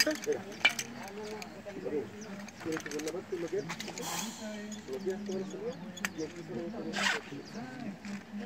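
Nylon weight belt with lead weights being wrapped around the waist and buckled: light clicks of the buckle and weights and short rasps of webbing pulled through the buckle, the loudest rasp near the end.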